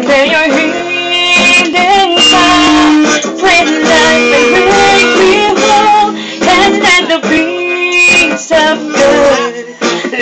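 Acoustic guitar strummed in steady chords while a woman sings a slow worship song into a microphone.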